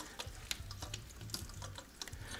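Faint sound of water flowing through an underfloor-heating manifold as its loops are filled, with small scattered clicks of a hand on the manifold's flow-meter fittings.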